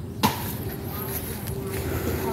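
A single sharp knock about a quarter second in, then low rustling noise, with a faint steady hum coming in past halfway.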